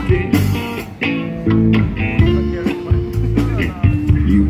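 Live band playing an instrumental passage of a song: electric guitars over a bass line.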